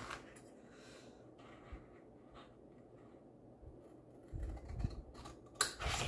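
Scissors cutting paper: a few faint, scattered snips and clicks. Near the end there is a soft low thump, then a sharper click.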